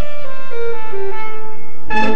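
Slow orchestral music: held string notes in a melody that steps down in pitch, with the fuller orchestra coming in near the end.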